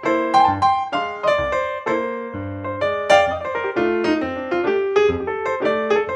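Background solo piano music: a quick run of notes, several a second, each struck and fading, over lower held notes.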